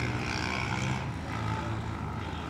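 A steady low mechanical hum, even in level.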